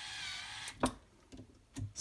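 DeWalt 8V Max gyroscopic inline screwdriver's small electric motor running slowly as it drives an M2 screw into a quadcopter motor mount. It stops with a sharp click just under a second in, followed by a couple of faint clicks.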